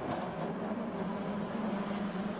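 San Francisco cable car running along its street track: a steady low hum over rumbling street noise.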